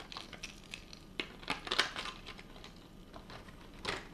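Clear plastic lure packaging crinkling and clicking as it is handled, in irregular crackles, the loudest a little under two seconds in.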